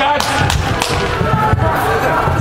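Players and spectators shouting during box lacrosse play, with about four sharp knocks of sticks and ball.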